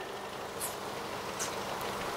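Steady low background noise in a pause between words, with two faint short high hisses about half a second and a second and a half in.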